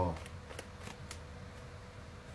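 Tarot cards being shuffled by hand, giving a few light card flicks in the first second or so.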